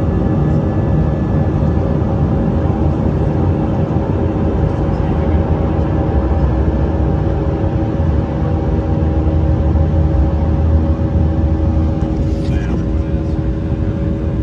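Airbus A319 jet engines heard inside the passenger cabin: a steady rumble and rush with a hum of several steady tones. A brief faint higher sound comes in near the end.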